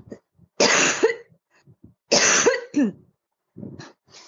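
A person coughing twice, about a second and a half apart. Each cough is loud and harsh and ends in a short voiced catch.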